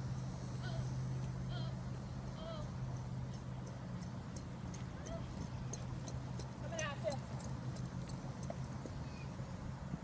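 Horse hoofbeats on arena dirt as a horse lopes closer toward the end, over a steady low hum. A horse whinnies once, about seven seconds in.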